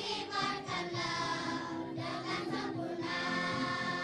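A group of schoolchildren singing together as a choir into microphones, holding long notes.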